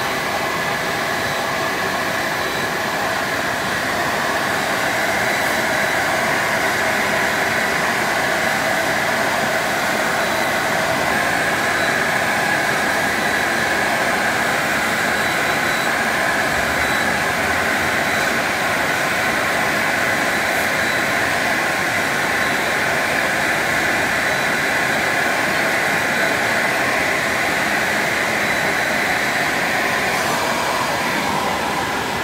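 Protek UNICO TT CNC milling machine milling closed-cell foam, its spindle and suction extraction running. The sound is a steady rushing noise with a faint high whine, swelling slightly about four seconds in.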